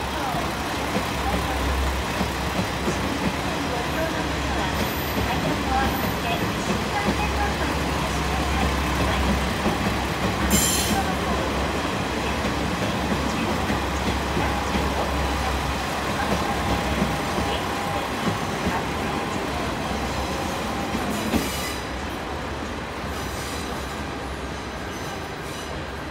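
A train of KiHa 40-series diesel railcars pulling out of the platform and passing at low speed, engines running with wheels rolling over the rails. Occasional faint squeal from the wheels and a short sharp high-pitched sound about ten seconds in. It gets somewhat quieter near the end as the train moves away.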